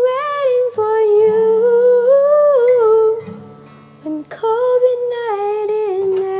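A woman's voice singing a wordless melody over acoustic guitar, in two long phrases with a short gap about three seconds in.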